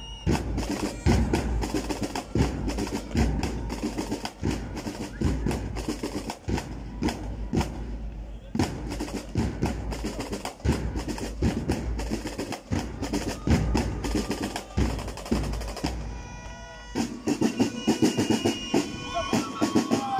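Rhythmic percussion: sharp, wood-like clicks and snare drum rolls in a steady, driving beat, with a brief pitched tone about sixteen seconds in.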